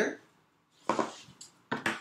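Small hard objects handled on a tabletop: two short knocks, about a second in and near the end, as a stone is set down and a card deck is picked up.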